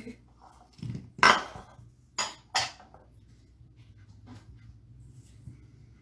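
Mixing spoon knocking and scraping against a stainless steel mixing bowl while creaming shortening and sugar: four sharp clanks in the first three seconds, the second one about a second in the loudest, then a couple of fainter taps.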